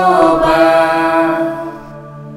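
A small mixed group of men and women singing together in harmony, holding a sustained chord that grows much quieter near the end.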